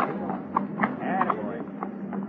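Low, brief voices of radio actors urging their horses on, over the steady low hum of an old radio transcription.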